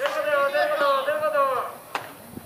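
A man's long, loud shouted call, held and wavering for about a second and a half before fading. There is a sharp knock right at the start and another just before the end.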